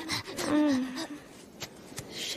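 A short, held vocal moan, starting about half a second in and falling slightly in pitch as it ends.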